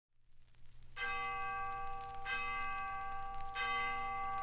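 A bell struck three times, evenly spaced a little over a second apart, starting about a second in; each stroke rings on so that the tones overlap. Underneath are the faint hum and crackle of a 78 rpm shellac record.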